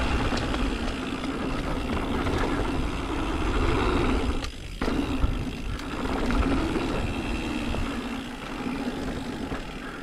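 Mountain bike rolling fast down a dirt singletrack: tyre rumble on the dirt and steady wind rush over the mic. Briefly quieter about four and a half seconds in.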